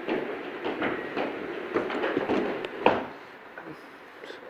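Ceramic crockery clinking and knocking as a grey-and-blue stoneware jug is picked up from among cups, plates and bowls, with one sharp, ringing clink about three seconds in.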